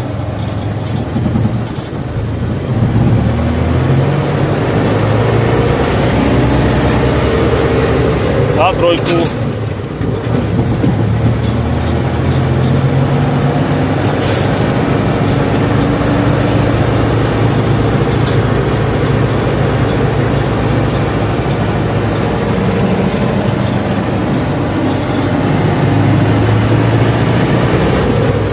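Tatra T148's air-cooled V8 diesel running under load as the truck drives off in second gear, heard from inside the cab, the exhaust knocking. A short hiss comes about 14 seconds in.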